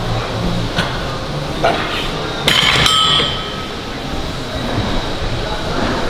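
Weight plates on a loaded T-bar row barbell clanking: softer knocks, then one loud metallic clank about two and a half seconds in that rings briefly, over a steady low hum.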